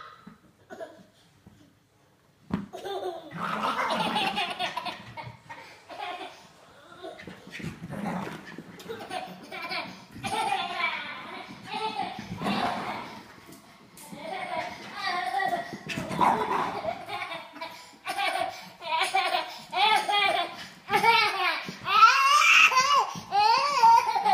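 People laughing hard, with bursts of voices; the laughter runs in waves and grows higher and livelier near the end. Wordless apart from the laughing.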